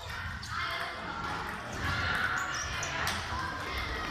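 Murmur of voices in a sports hall, with a few light, scattered taps of a table tennis ball.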